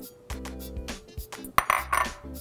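A spatula scraping and knocking against a bowl, ending in a louder clink near the end, over background music with a steady beat.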